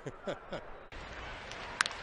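A man's laughter trailing off, then a steady baseball-stadium crowd murmur, with one sharp crack of a bat hitting the ball near the end.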